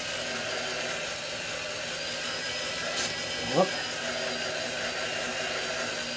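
Electric drill running steadily, spinning a brushed power-tool motor's armature while the edge of a hand file is held against its copper commutator to dress down the badly worn surface. A short click about three seconds in and a brief rising sound just after.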